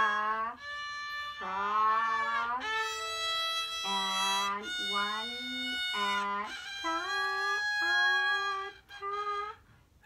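A beginner's violin playing slow whole-bow notes one after another, each lasting about a second, with a wavering, sliding pitch at some note starts. It falls quiet just before the end.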